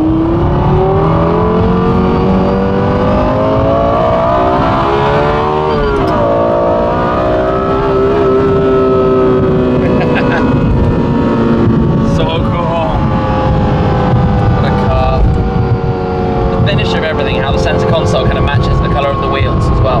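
Lexus LFA's 4.8-litre V10, heard from inside the cabin, revving up through a gear under acceleration, with the pitch climbing for about six seconds. At the upshift the pitch drops sharply, climbs briefly again, then holds and slowly falls as the car cruises.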